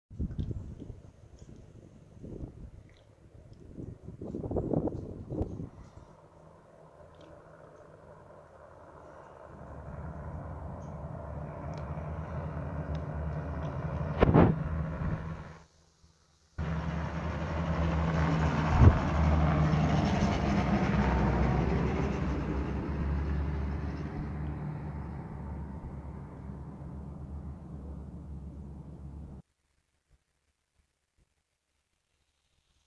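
A pickup truck drives past on a road: its engine hum and tyre noise build up, are loudest just past the middle, then fade away.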